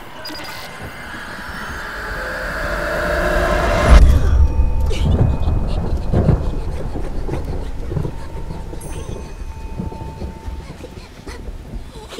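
Film sound design: a noisy swell rises for about four seconds to a sudden loud hit, followed by a deep rumble that slowly fades under a thin held electronic tone.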